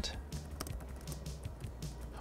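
Laptop keyboard keys of an HP OMEN Transcend 14 being typed on: a quiet, irregular run of soft key clicks.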